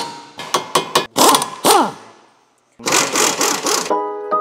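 Pneumatic impact wrench on a rear wheel hub nut: several short trigger bursts, then a longer run whose pitch falls as it spins down. After a brief silence, another burst of about a second near the end.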